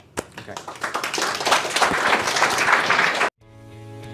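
Audience applauding, swelling over about three seconds, then cut off abruptly. Soft guitar music starts right after.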